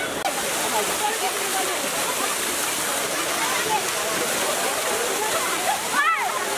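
Heavy stream of water gushing from a large open pipe and crashing down onto people and the wet street: a loud, steady rush. Crowd shouts and chatter rise over it.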